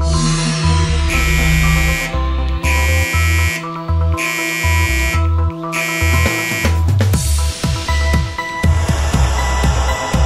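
A gas leak detector's alarm buzzer sounding four times, each harsh beep about a second long with short gaps between, over electronic background music with a steady bass beat.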